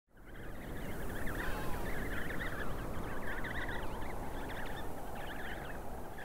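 Wind blowing over open ground, with many birds calling over one another, as in a penguin colony.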